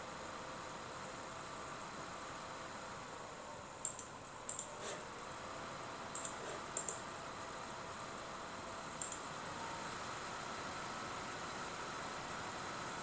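Lenovo ThinkStation P3 Ultra's cooling fans running at idle: a steady whir with faint whining tones, the weird fan noise the machine makes even when nothing is being done on it. A few brief high clicks come in about four, six and nine seconds in.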